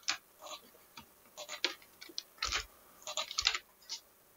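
Computer keyboard being typed on while code is edited: irregular clusters of short key clacks, one with a deeper thud about two and a half seconds in.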